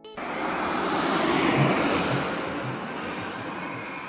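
A motor vehicle passing on the road close by: a rush of engine and tyre noise that swells for about a second and a half, then slowly fades away.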